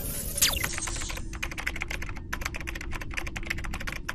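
A quick falling sweep, then a rapid run of clicks like fast typing on a computer keyboard, several a second with short breaks: a digital sound effect laid over a steady low hum.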